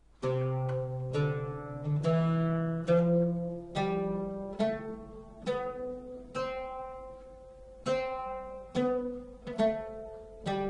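An oud plucked note by note, playing a major (ajam) scale, about one ringing note a second.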